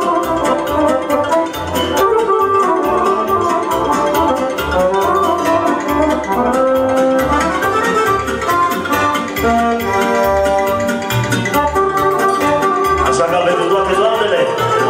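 Instrumental hora dance music from a live party band: a melody over a steady, even bass beat.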